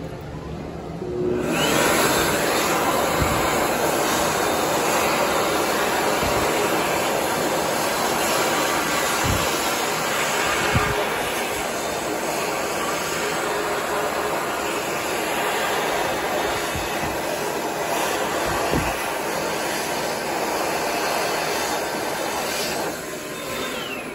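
Excel Dryer ThinAir high-speed hand dryer blowing a steady rush of air, not really that loud. It starts about a second and a half in and cuts off shortly before the end.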